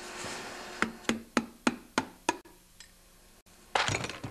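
A hammer tapping the sump cover of a 10 hp Tecumseh snowblower engine to break it loose from the block: six quick knocks on metal, about three a second, then a louder thump near the end.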